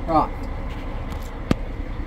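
Hands working wiring and plugs at a Haldex EBS modulator under a truck trailer: a single sharp click about one and a half seconds in, over a steady low rumble. A brief falling voice sound comes near the start.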